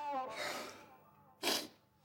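A held note of brass film music ends just after the start and a soft noisy tail fades away. About one and a half seconds in comes a single short, sharp burst of noise, the loudest sound here.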